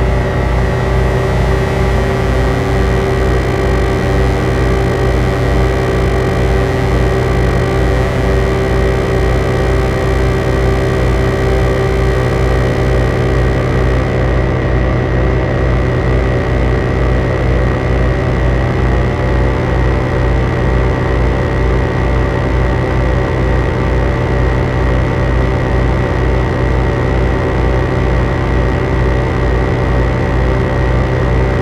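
Layered analog synthesizers (Behringer Model D, Neutron, K-2 and Crave) playing a dense, loud noise drone over a fast pulsing low bass, with reverb and delay on it. Wavering pitch sweeps weave through it early on, and the top end drops away about halfway through.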